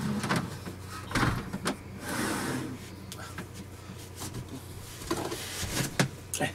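Scattered knocks, clicks and rustling as a man handles things overhead and climbs down onto a bench in an RV, over a steady low hum.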